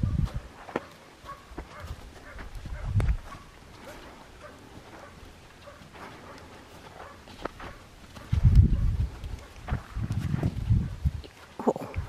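A saddled horse moving about on sand, with faint scattered hoof steps and tack clicks, broken by low rumbling bursts at the start and again about two-thirds of the way through.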